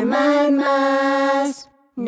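A lullaby sung in long, held notes over soft music, cutting off about a second and a half in.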